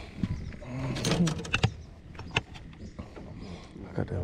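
Knocks and clatter of a bass boat's livewell lid and compartments being handled as a caught crappie is put away, with several sharp clicks in the first half, and a short low mumble about a second in.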